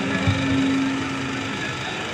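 A steady low hum over background noise, sinking slowly in level toward the end.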